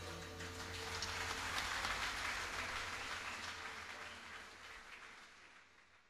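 Audience applause after the last note of a live tune, swelling in the first couple of seconds and then fading away.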